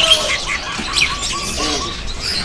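Caged songbirds in a bird market chirping and calling over one another: many short high chirps, with a quick run of short repeated notes at about five a second.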